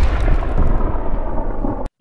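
Explosion sound effect: the rumbling tail of a loud blast, fading in its upper range, which cuts off suddenly near the end.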